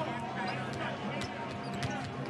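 A basketball being dribbled on a hardwood court, a few bounces about half a second apart, over a steady arena crowd murmur.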